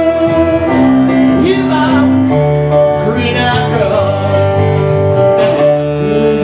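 Live band music: a saxophone playing held notes and bending melodic lines over electric keyboard accompaniment.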